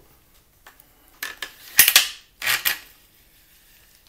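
Hard clicks and clacks of the Adderini slingbow being handled and picked up: a few light clicks a little after a second in, a loud sharp clack near two seconds, and a softer knock about half a second after it.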